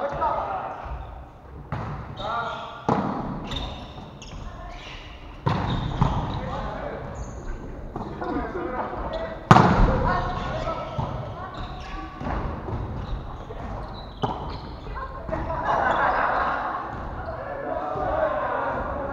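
A volleyball being struck during a rally, with several sharp smacks over about eighteen seconds, the loudest about nine and a half seconds in as a player hits at the net. Players' voices call out, and everything echoes in a large gymnasium.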